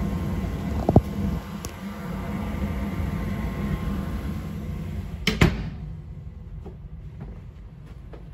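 Lennox furnace running with a steady hum. There is a sharp knock about a second in, then a closet door shuts with a loud knock about five seconds in, and after that the hum is much fainter.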